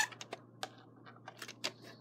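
Plastic VHS cassette being handled and set down, its shell giving a series of about seven short, light clicks and taps.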